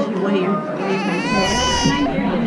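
A baby giving a long, high-pitched, cry-like call from about halfway in, over adult voices.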